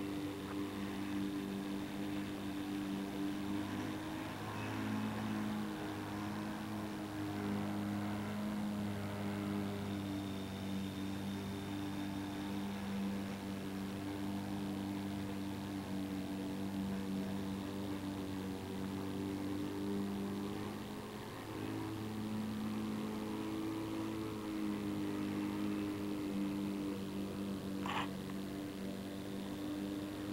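A steady, low, buzzy hum, with a brief dip about two-thirds of the way through and a short chirp near the end.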